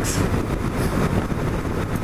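1997 BMW R1100RT's air- and oil-cooled boxer twin running steadily at cruising speed, mixed with wind rush on the rider's microphone.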